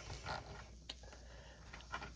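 Faint handling noise of a plastic action figure being moved and posed in the hands: a few soft clicks and light rubbing.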